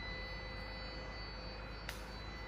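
Quiet room tone in a pause: a low steady hum with a faint high whine, and one small click near the end.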